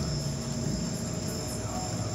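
Steady background hum with a continuous high-pitched whine over it.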